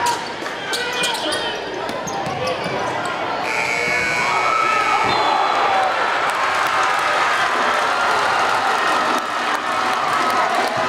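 Gym crowd noise with a basketball bouncing and sneakers squeaking on the court. About three and a half seconds in, a steady high tone sounds for about a second, and the crowd's voices then swell.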